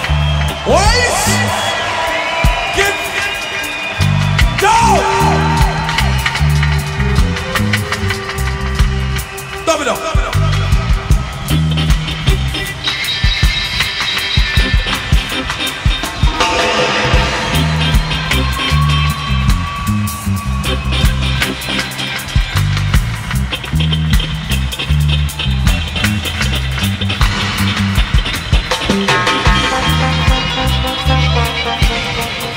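Live band music in a reggae/dub style: a heavy, pulsing bass line with wavering, gliding vocal or instrument lines over it.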